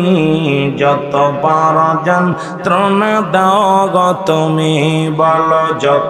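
A man chanting a Bangla waz verse in a tearful, melodic lament, through microphones. He holds long notes with wavering ornaments and takes short breaths between the phrases, about two seconds and four seconds in.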